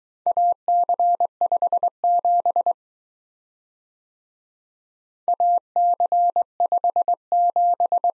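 Morse code practice tone: a single steady pitch keyed on and off in dots and dashes, sending two groups of letter/number characters with a silent gap of about two and a half seconds between them.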